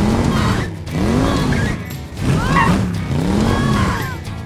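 Edited-in sound effects over background music: a run of tones that swoop up and down in pitch, about one a second.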